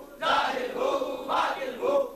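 A group of men chanting zikr together, a short devotional phrase repeated in a steady rhythm about once a second.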